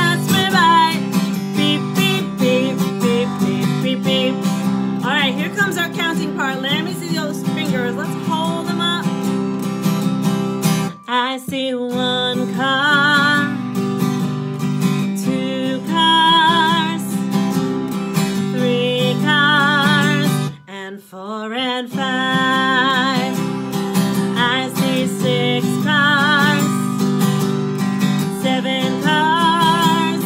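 A woman singing with vibrato over a strummed acoustic guitar; the playing breaks off briefly twice, about a third and two-thirds of the way through.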